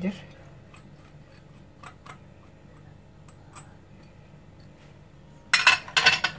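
A few light ticks of a utensil against a glass mixing bowl, then, about five and a half seconds in, a short loud clatter as a metal whisk starts stirring grated cheese into an egg and cream mixture in the bowl.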